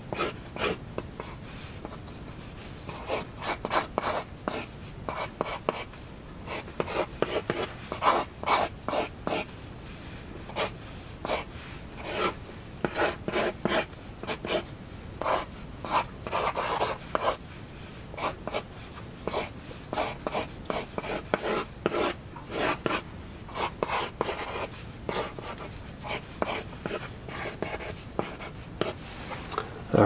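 Pencil sketching on paper: quick, uneven scratching strokes, often several in a row, with short pauses between runs.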